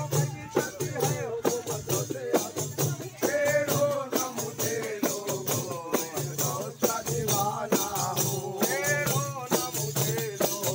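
Large hand-held frame drums (daf) beaten in a steady, driving rhythm of about two strikes a second, with a rattling jingle on each stroke. Men's voices sing long held phrases over the drumming, about three seconds in and again near the end.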